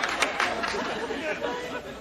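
Studio audience laughter fading away after a punchline.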